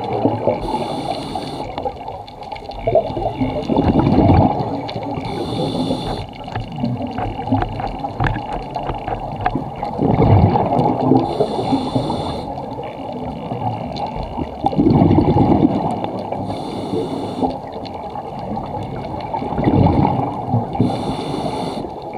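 Scuba diver breathing through a regulator underwater: each breath drawn through the regulator alternates with a rush of exhaled bubbles, in a steady cycle about every five seconds.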